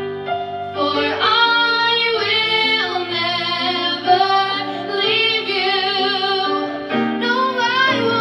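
Two female voices singing a musical-theatre duet through microphones, accompanied by piano.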